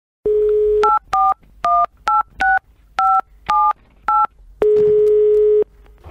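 Telephone line audio: a steady dial tone, then eight touch-tone (DTMF) digits keyed one after another, each a short two-note beep, then a single ringing tone about a second long as the number rings.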